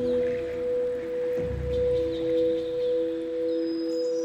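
Meditative background music of held, ringing tones, two steady pitches sounding together, with a low swell about a second and a half in.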